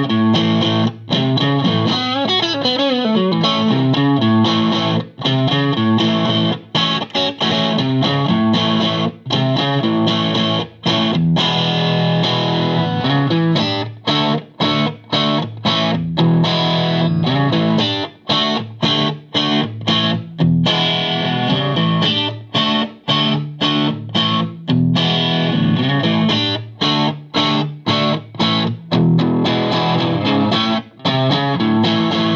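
1958 Danelectro U2 electric guitar played on its neck lipstick pickup alone, through a Friedman Small Box amp head and a 2x12 cabinet. Picked riffs and chords with many notes cut short, and a descending run about two seconds in.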